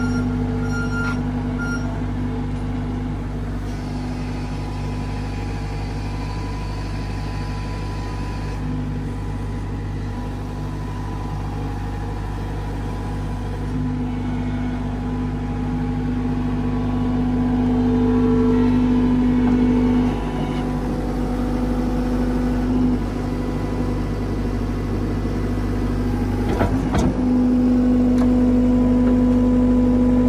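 Gehl R260 skid-steer loader's diesel engine running steadily, with a strong hum that comes and goes in its note. It gets louder past the middle and again near the end, with a brief click shortly before the end.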